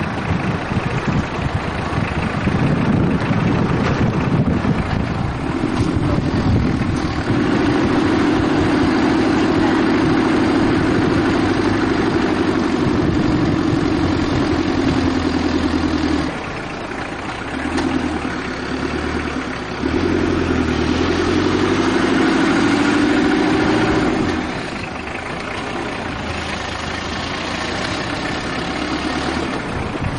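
Car engine and road noise heard from inside a slowly moving car. A steady low drone swells and eases twice as the engine takes and drops load.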